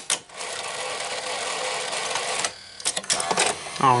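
Sony SL-5000 Betamax VCR's tape-loading mechanism running after eject is pressed: a click, then a small motor whirring steadily for about two and a half seconds as the tape unthreads from the head drum, then a few clicks near the end.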